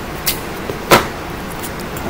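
A piece of clear adhesive tape being handled and torn from the roll, with a sharp snap about a second in and a couple of lighter clicks before it.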